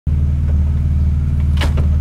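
Steady low mechanical hum from a 1992 BMW E36 convertible as its power soft top folds back under the raised tonneau cover lid, with a few short clicks near the end.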